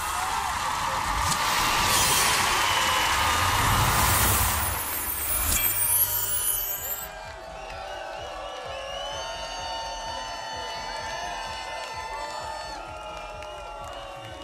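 A concert crowd cheering and applauding, loud and noisy, for about the first six seconds. Then the sound cuts to quieter music with gliding, pitched tones.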